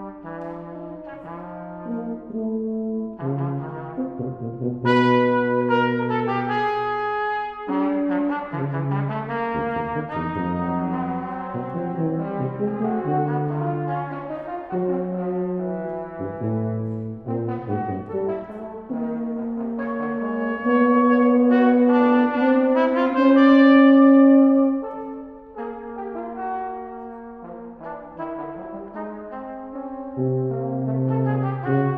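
French horn, trumpet and tuba trio playing chromatic, widely spaced counterpoint: held notes in the three voices start and change at different times, some overlapping, with the loudest stretch a little past the middle.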